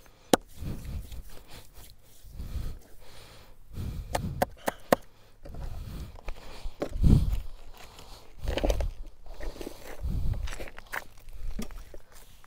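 Oiled hands working on bare skin during a body massage: dull thumps of pressing strokes every second or two, with a few sharp slaps, several in quick succession about four seconds in.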